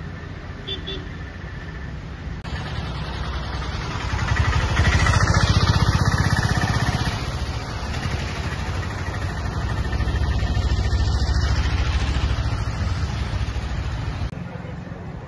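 Roadside traffic noise: a continuous rumble of passing vehicles that swells twice, once about four seconds in and again about nine seconds in.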